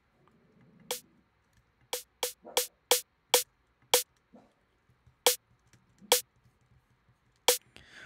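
A sampled accent snare drum played as about ten single hits at uneven intervals, each a sharp crack with a short ringing tone.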